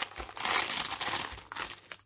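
Gift wrapping paper torn open and crinkled by hand: a dense run of crackly rustling that fades off toward the end.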